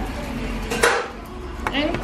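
Food-prep clatter of kitchen utensils at a food counter: a sharp knock about a second in, then a lighter click, with a voice starting near the end.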